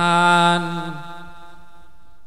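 A monk's voice holding one long sung note at the end of a phrase of Isan lae, the melodic chanted style of Thai sermon, dipping slightly in pitch and fading out about a second and a half in.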